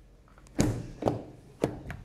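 Rear door of a GMC Sierra 1500 pickup being opened: four clunks and clicks from the handle, latch and door, the first and loudest about half a second in.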